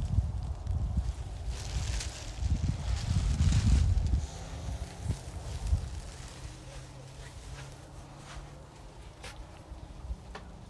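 Wind buffeting the phone's microphone in gusts for the first four seconds or so, then dying down to a light breeze with a few faint clicks.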